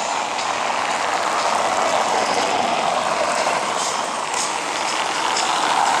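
Steady noise of city traffic: car tyres rolling over cobblestone paving.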